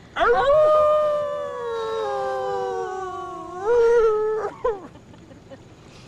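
A dog howling: one long howl that sinks slowly in pitch, lifts again near the end and breaks off, followed by a brief second cry.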